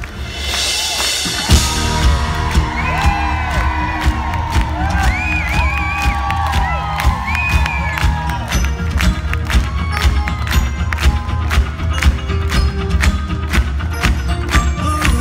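A live rock band plays an instrumental intro with a steady drum beat and bass. The concert crowd cheers and whoops over it, with a burst of cheering about half a second in.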